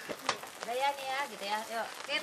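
Curry fried rice sizzling in a wok as it is stirred with a spatula, with a person's voice over it from about half a second in.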